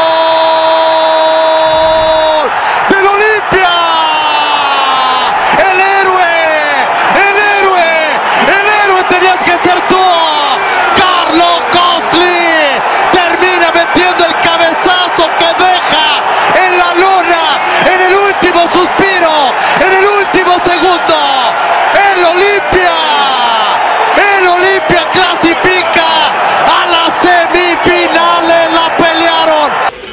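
Football commentator's goal cry: one long held 'gol' for about two and a half seconds, then continuous excited shouting in a high, strained voice.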